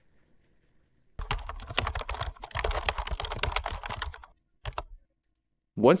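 Computer keyboard typing: a fast run of keystrokes lasting about three seconds, then a brief second burst of keys shortly before the end.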